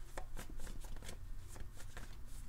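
A tarot deck being shuffled by hand: a run of quick, uneven card flicks and taps, over a low steady hum.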